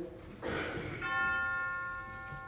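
A small bell or chime struck once about a second in. Several clear tones ring together and fade slowly. Just before the strike there is a short burst of noise.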